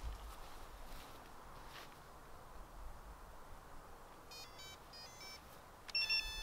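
UpAir One quadcopter being powered on: about four seconds in, a quick run of short electronic start-up beeps at stepping pitches, ending in a louder beep. Before the beeps there is only faint outdoor background.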